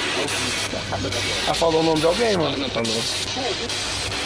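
Spirit box radio sweeping with a steady hiss of static, with short snatches of voice breaking through about two seconds in and again near three seconds. The investigators take the voice for a spirit saying someone's name.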